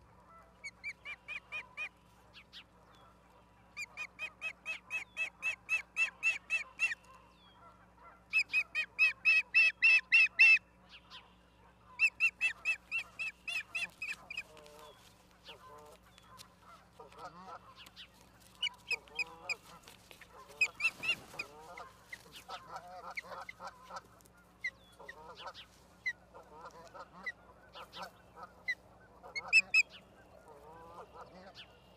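Ospreys calling: loud trains of rapid, high whistled chirps, about four a second, each train lasting two to three seconds, repeated four times in the first half. After that come only scattered single chirps and softer, quieter calls.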